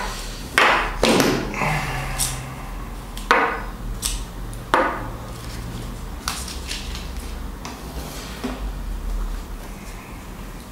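Federal Power-Shok soft-point rifle cartridges being taken from the box's plastic tray and stood upright one by one on a wooden tabletop: about half a dozen sharp knocks of brass on wood, spaced a second or so apart, with softer handling noise between.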